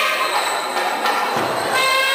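Wind-instrument music of long held reedy notes, echoing in a large hall. It breaks off for about a second in the middle, leaving crowd noise and a brief low rumble, then resumes near the end.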